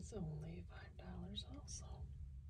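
A person speaking softly, close to a whisper, in short phrases over a steady low hum.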